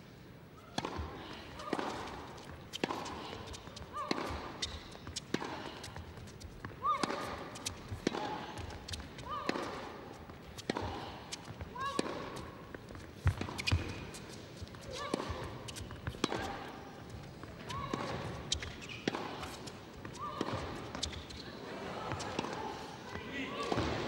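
A long tennis rally on an indoor court: the ball struck back and forth, with sharp racket hits and bounces about every second.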